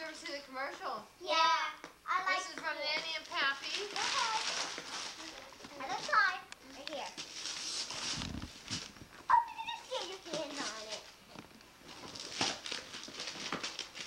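Young children's high voices chattering, with gift wrapping paper rustling and tearing in between, and a sudden knock about nine seconds in.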